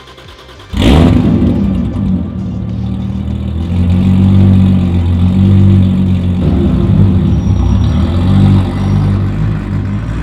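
Turbocharged 2JZ-GTE inline-six in a BMW Z4 coupe, heard through its custom exhaust, comes in abruptly about a second in and runs with a low, steady note that swells and eases with light throttle as the car pulls away at low speed.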